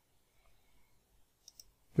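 Two quick computer mouse clicks about one and a half seconds in, with near silence around them.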